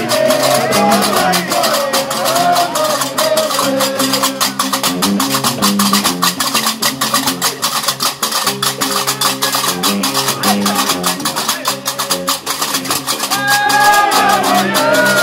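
Diwan (Gnawa) music: a guembri, the three-string bass lute, plays a repeating low plucked bass line over a steady, fast metallic clatter of qraqeb iron castanets. Men's voices sing at the start and join in again near the end.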